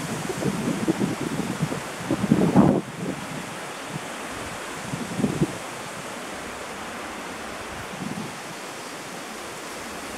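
Wind gusting on the microphone, buffeting heavily for the first three seconds and again briefly twice later, over a steady rush of wind.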